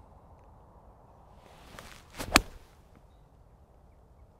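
A five iron swung through a full golf shot: a brief swish of the club through the air, then a sharp strike as the clubhead hits the ball a little over two seconds in.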